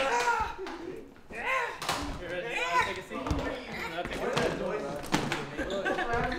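Indistinct voices in a room, broken by a few sharp thumps, the loudest near the end.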